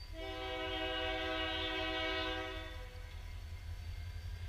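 Freight locomotive air horn sounding one long blast of several notes at once, lasting about two and a half seconds, over a steady low rumble. It is sounded for the grade crossing the train is approaching.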